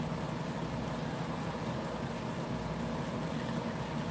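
Steady low background hum and hiss, even throughout, with no distinct events.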